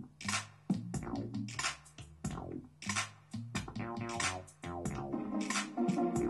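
A hip-hop beat made on a drum machine: a busy, even pattern of drum hits over a steady bass line, with pitched synth notes coming forward in the second half.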